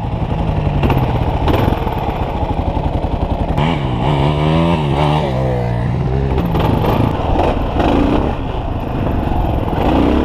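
Dual-sport motorcycle engine running under way, its revs rising and falling several times as the throttle is opened and closed.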